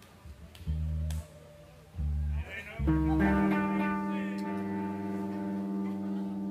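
Electric bass guitar plucking three short low notes about a second apart, then an amplified electric guitar chord ringing out and holding steady.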